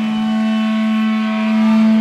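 A single sustained electric guitar note held through the amplifier, steady in pitch and swelling a little louder toward the end.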